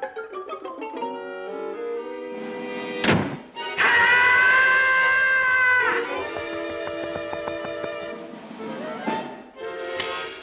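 Orchestral cartoon underscore with light string notes. There is a quick sweep about three seconds in, then a loud held chord for about two seconds, then softer sustained chords, and another quick sweep near the end.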